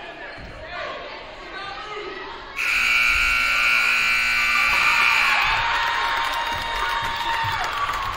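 Basketball scoreboard buzzer sounding as the game clock hits zero, ending the period. It is a loud, steady electronic buzz that starts suddenly about two and a half seconds in and holds for several seconds over crowd noise in a gym.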